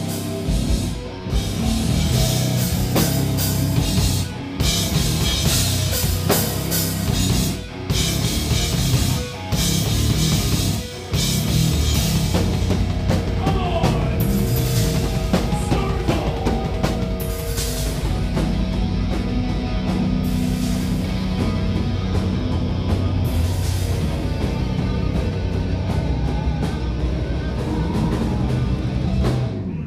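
A heavy metal band playing live: distorted guitars, bass and a pounding drum kit. The band stops short several times in the first ten seconds or so, then plays on without a break.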